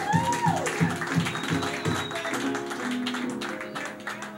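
Resonator guitar played with a slide, its notes gliding in pitch, over a steady low pulse of about three beats a second, with light hand taps on a snare drum.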